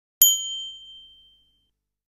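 A single bright chime sound effect, struck once and ringing out for about a second and a half as an app logo animation plays.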